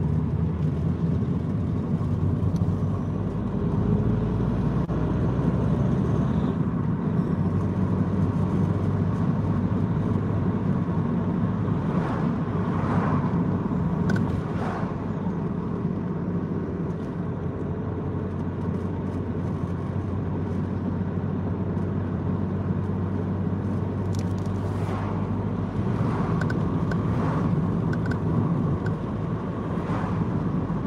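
Car engine and tyre noise heard from inside the cabin while driving at a steady pace, a constant low rumble.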